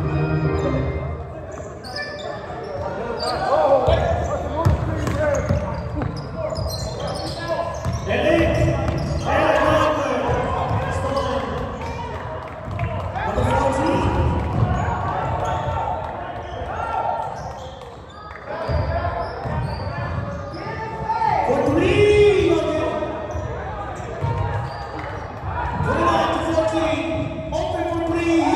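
Basketball being dribbled and bounced on a hardwood gym floor during play, with players' and spectators' shouts echoing in the large hall.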